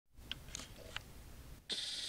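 A few faint clicks, then a short electronic beep from a cordless phone handset near the end.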